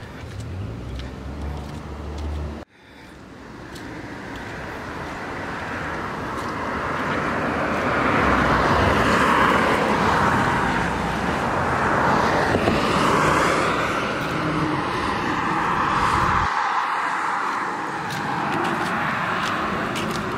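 Road traffic on a two-lane road: a low rumble cuts off suddenly about three seconds in. Then tyre and engine noise from passing cars swells over several seconds and stays loud through the rest.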